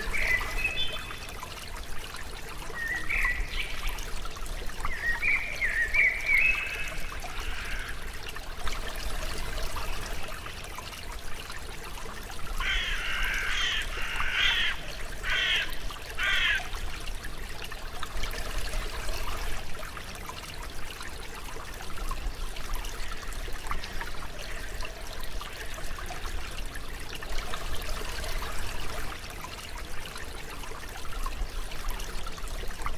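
Water trickling steadily, like a small stream, with bird calls over it: short chirps in the first several seconds, then a run of rapid chattering notes in the middle.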